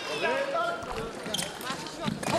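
Sabre fencers' quick footfalls on the piste as they advance into an attack, with a few sharp strikes in the middle. A voice calls out in the first moments.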